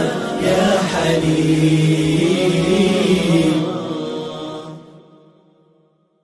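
Arabic nasheed sung by voices, with a long held closing note. It fades out to silence near the end.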